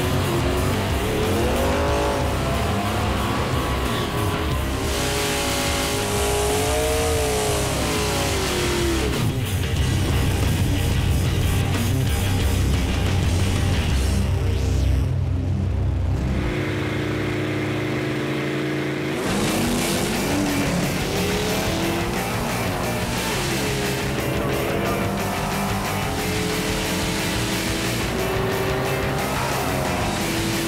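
Two V8 drag cars, a stock LS1 Mustang and a small-block Ford Thunderbird, revving and running on the strip, their engine pitch sweeping up and down several times. A music bed plays underneath.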